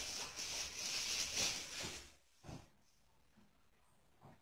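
Plastic wrapping rustling and crinkling as it is handled for about two seconds, then one soft knock and near quiet.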